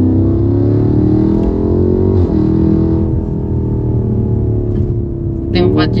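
BMW M5 V8 engine heard from inside the cabin under hard acceleration. The engine note climbs steadily, drops sharply at an upshift about two seconds in, then climbs again. Vocals come in over it near the end.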